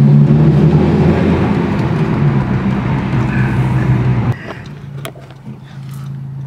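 Honda Civic Type R engine heard from inside the cabin, a loud, steady drone after hard acceleration that slowly eases off. About four seconds in it drops sharply to a much quieter steady hum.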